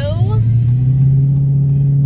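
Car engine and road noise heard inside the cabin while driving: a steady low drone that grows a little stronger and edges up in pitch about half a second in.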